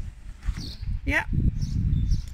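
Low, uneven rumbling noise on the microphone, loudest in the second half, under a single spoken 'yeah' about a second in.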